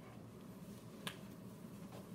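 A single sharp click about a second in, over a faint steady low hum of room tone.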